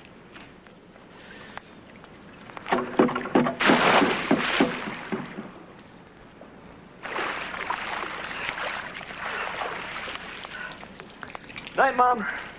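Springboard rattling under a diver's press, then a loud splash into the pool about three and a half seconds in. Later, a long stretch of sloshing water.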